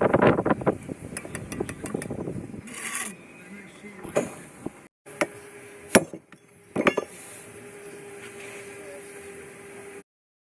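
Bricklaying tools knocking and clinking on brick: a few sharp single knocks a second or two apart in the second half. Wind rumbles on the microphone in the first couple of seconds.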